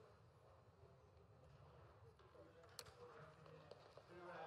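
Near silence: faint room tone of a large hall with distant, indistinct voices and one faint click near three seconds in.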